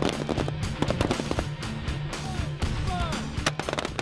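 Rifle fire from M16A4 service rifles on a firing line: many loud shots overlapping at an irregular pace. A steady low musical drone runs underneath.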